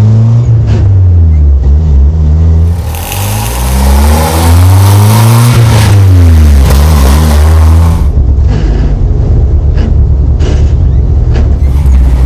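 A 1991 Jeep Wrangler driven through its manual gears: the engine note rises and drops several times as it shifts, with a harsh rasping noise over the middle few seconds. Second gear grinds badly, a sign of a gearbox worn past repair. After about eight seconds the engine settles into a steady low running note.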